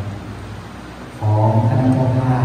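Thai Buddhist monks chanting in a low, droning recitation with long-held notes; it drops a little in the first second, then comes back louder about a second in.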